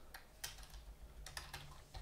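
Faint, irregular keystrokes on a computer keyboard, about half a dozen taps.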